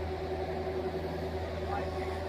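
Cat mini excavator's diesel engine running steadily as a low hum while it digs, with faint voices over it.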